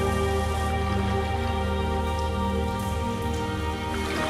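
A slow ambient music pad of sustained held chords, with the rush of stream water over rocks mixed in as a steady hiss.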